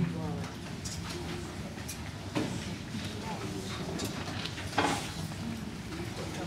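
Quiet murmur of voices in a large hall, with a couple of brief soft knocks, the second louder, like stand or instrument handling.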